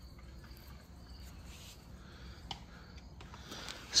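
Quiet outdoor ambience with faint insect chirping, and one soft click about two and a half seconds in.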